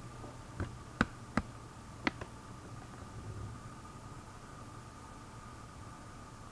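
Four light, sharp clicks in the first two seconds, from a glass cup being handled, then quiet room tone with a faint steady hum.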